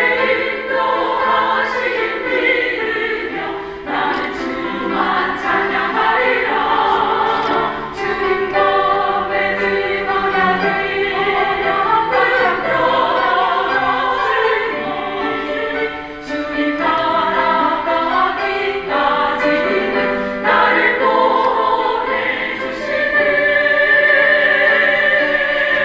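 A women's vocal ensemble singing a hymn in harmony, in sustained phrases with short breaths between them.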